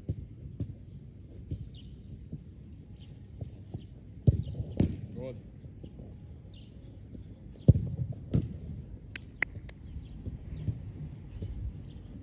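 Sharp thuds of a football being struck and handled during goalkeeper shooting drills, in two pairs about four and eight seconds in, over faint bird chirps.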